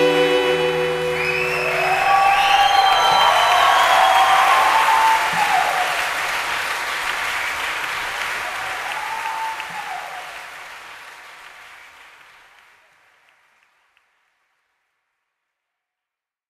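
Concert audience applauding and cheering as the last held chord of the string quartet (violins, viola, cello) ends about two seconds in. The applause then fades out and is gone by about 13 seconds in.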